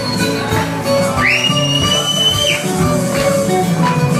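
Live Greek folk music on a bouzouki with accompaniment. A loud whistle cuts across it a little after a second in: it rises quickly, holds one pitch for over a second, then stops.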